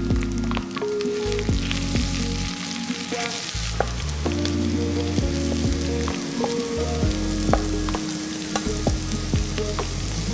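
Sliced onions sizzling steadily in a stainless steel pot as they are stirred with a wooden spatula. Minced ginger and garlic are scraped into the pot about halfway through, and the frying continues.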